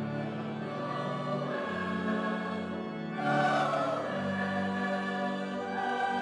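Choir and standing congregation singing a Christmas carol in sustained chords with pipe organ accompaniment, in a large church. The singing swells louder about halfway through.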